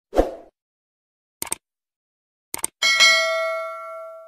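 Sound effects of a YouTube subscribe-button animation: a short soft pop, then two quick double clicks like a mouse, then a bright bell ding that rings on and slowly fades.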